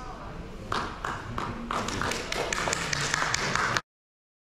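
Audience applauding, starting about a second in and building into dense clapping, then cut off abruptly near the end.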